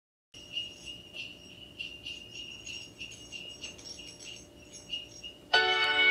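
Sleigh bells jingling softly and unevenly. About five and a half seconds in, louder instrumental music comes in with ringing bell-like notes.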